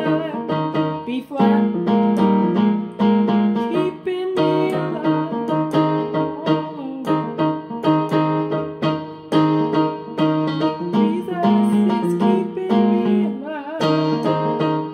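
Yamaha digital keyboard on a piano voice playing a gospel chord progression: full two-handed chords with a bass note, held and changing every second or so.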